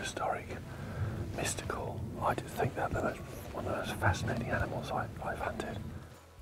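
Whispered speech: a man talking in a whisper close to the microphone.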